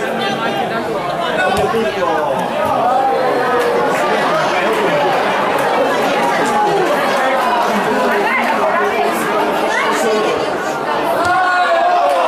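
Indistinct chatter of many voices talking over one another at a steady level, with no single voice standing out.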